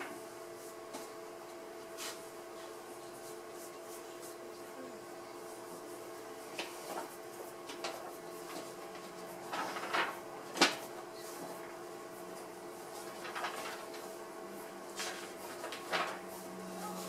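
Quiet room with a steady hum and scattered small clicks, knocks and paper rustles from people sketching with pencils on paper; the sharpest click comes about ten and a half seconds in.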